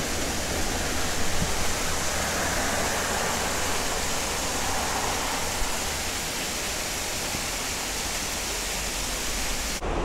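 Steady rushing hiss of a thin roadside waterfall running down a rock face, cutting off suddenly near the end.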